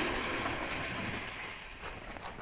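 Chain-link fence gate being pushed open: a metallic rattle and scrape of the wire mesh and frame that fades away over a second or so.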